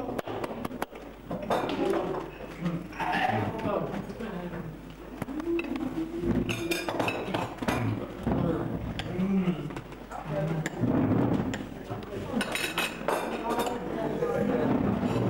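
Indistinct chatter of several voices around dining tables, with a few clinks of crockery and cutlery.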